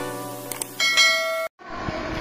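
A musical intro jingle ends with a couple of short click sound effects and a bright bell-like chime, the kind used in a subscribe-button animation. It cuts off abruptly about one and a half seconds in, and faint room noise from a phone recording follows.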